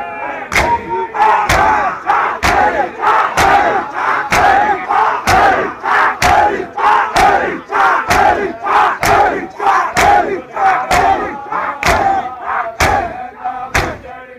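Crowd of men doing matam: chest-beating in unison, about one loud slap a second. Between the strokes many voices chant together.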